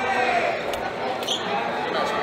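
Gym hall ambience: indistinct voices of people talking, with a couple of brief knocks.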